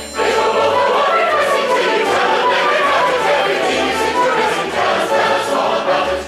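Operetta chorus of many mixed voices singing loudly together with the orchestra. The full ensemble comes in suddenly at the start.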